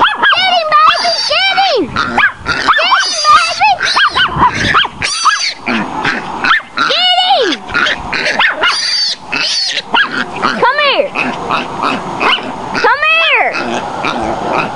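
Chihuahua baying at a young wild boar: a rapid, continuous string of high yelping barks, each call rising and falling in pitch.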